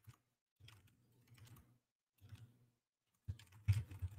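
Computer keyboard typing in short, faint spurts with silent gaps between them, the loudest spurt near the end.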